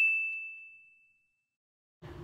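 A single bright chime-like ding, one high ringing tone fading away over about a second and a half.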